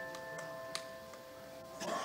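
The last chord of a piano piece ringing on and slowly fading away, with a faint click about three quarters of a second in.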